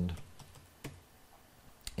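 Two sharp clicks at a computer, about a second apart, with quiet room tone between them.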